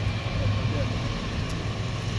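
City street noise: a steady low engine hum of traffic over a general hiss, with faint voices of people nearby.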